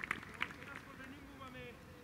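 Faint, distant men's voices from the players on an outdoor football training pitch, with a few light knocks, fading out toward silence.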